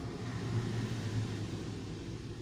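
Pen scratching on notebook paper while a word is written, over a steady low hum.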